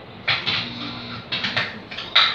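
Electric guitar struck in a few short, separate chord stabs, with a low note ringing briefly after the first ones.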